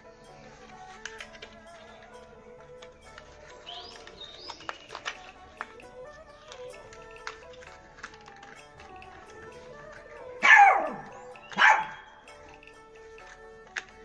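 A dog barks twice, loud and falling in pitch, about ten seconds in and again a second later. Quiet background music plays throughout, with light clicks from a plastic pot and wire being handled.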